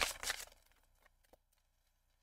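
Faint rustle and light clicks of a tarot deck being shuffled by hand, fading to near silence after the first half-second apart from two small ticks.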